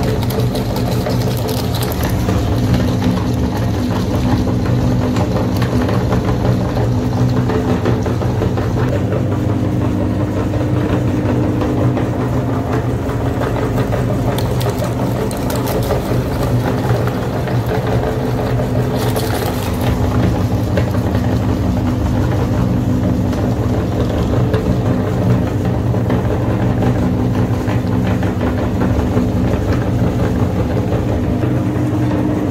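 Meat grinder running with a steady low motor hum as it grinds frozen ice-cream bars and their wooden sticks, with a couple of brief crunches about halfway through.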